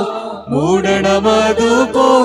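Orthodox church choir singing a slow liturgical chant. One phrase fades out and a new one begins about half a second in, gliding up in pitch.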